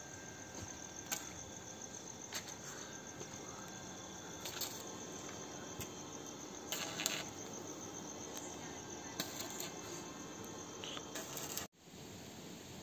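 Crickets chirping in a steady, high, pulsing trill, with scattered short clicks and crackles over a low background hiss.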